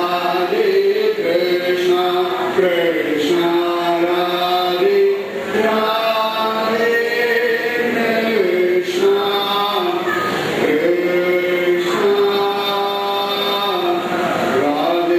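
A man singing a slow devotional melody solo into a microphone, in long held notes that glide from one pitch to the next.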